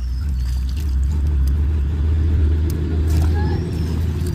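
Low engine rumble of a passing motor vehicle, swelling to its loudest in the middle and easing off near the end.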